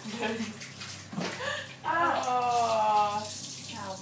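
A child spitting out a chewed jelly bean with wet sputtering, then a drawn-out vocal cry, falling slightly in pitch, from about two seconds in.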